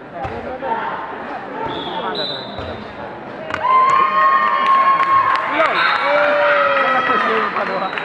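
Bare feet thudding on the tatami mats during a karate kata, over a murmur of voices in a reverberant sports hall. From about three and a half seconds in, several voices shout loudly and overlapping.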